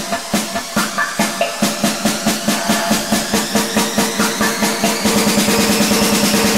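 Hard techno build-up: the kick drum drops out and a snare roll speeds up under a rising noise sweep.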